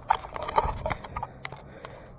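Handling noise from fingers on a phone camera: a string of irregular light taps and clicks, busiest in the first second.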